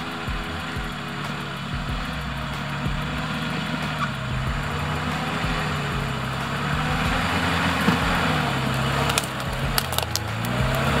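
Nissan GQ Patrol's TD42 diesel engine running at low revs as the 4WD crawls through a dried mud rut, its pitch rising and falling a little with the throttle and growing louder as it approaches. A few sharp clicks come near the end.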